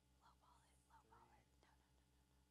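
Near silence: room tone with a steady low hum and faint whispered or murmured speech, too quiet to make out.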